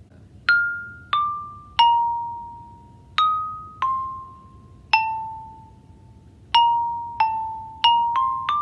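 Xylophone played note by note with yarn mallets, each bar struck once and left to ring and fade: a falling three-note figure (F, D, B-flat), then another (E-flat, C, A) with the last note held, then three quicker notes near the end.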